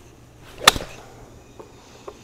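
Golf driver striking a teed golf ball: a single sharp crack about two-thirds of a second in.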